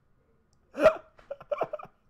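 A man bursts out laughing: one sharp laugh about a second in, then a few quick, choppy laughs.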